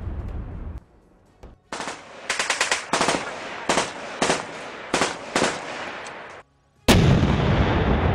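Gunfire from a vehicle-mounted gun: about ten sharp shots, some in quick doubles, fired irregularly over a few seconds. After a short silence, one loud boom comes near the end and fades slowly.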